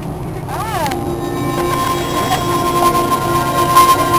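Airliner cabin noise from an Airbus A340-300's four CFM56 jet engines as the plane taxis: a steady low drone, with a steady engine whine coming in about a second in and growing a little louder.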